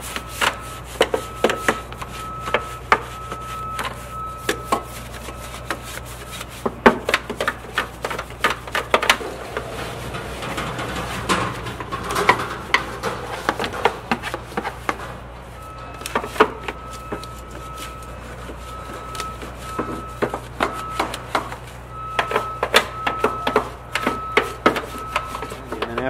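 Brush scrubbing the soapy, degreaser-covered plastic panels and engine parts of a Vespa scooter: a scratchy rubbing, broken by frequent clicks and knocks as the brush hits the plastic.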